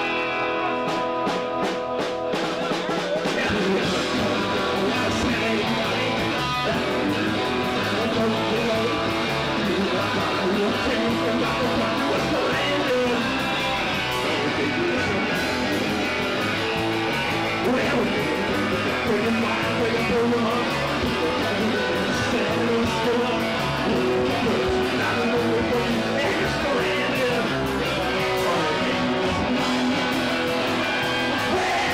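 Live garage rock band playing: electric guitar at first, then the full band with bass guitar and drums coming in a few seconds in and playing on at a steady, loud level.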